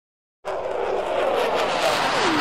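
Whooshing sound effect for an animated intro: a dense rushing noise that cuts in sharply about half a second in and carries on steadily.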